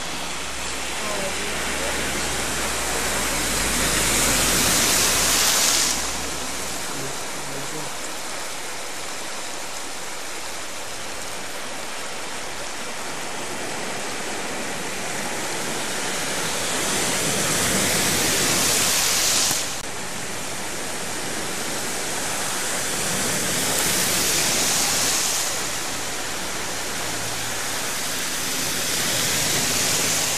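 Steady rush of heavy rain and running flood water on a street, with cars driving through the flood water: three louder swishing rushes of tyres throwing up spray, the first two cutting off abruptly.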